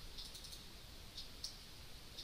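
Faint clicking of computer controls: a quick run of clicks in the first half second, then two single clicks past the middle.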